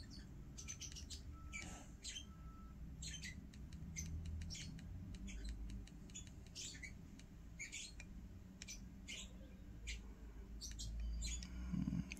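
Faint, irregular clicks of the Flipper Zero's plastic directional pad and centre button being pressed by a thumb, one or two a second, while scrolling through menus.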